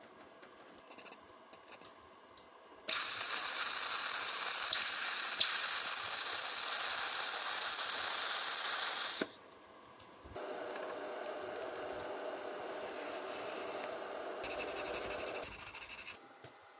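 Xlaserlab X1 400 W pulse laser welder welding steel underwater, its torch tip submerged: a loud, steady hiss and sizzle that starts about three seconds in and stops after about six seconds. After a brief pause a quieter steady sound runs for about five more seconds.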